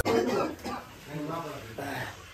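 A young man coughing and clearing his throat in a few short bursts as he wakes and sits up.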